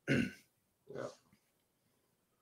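A man's quick "yeah", then about a second in a brief throat-clearing sound.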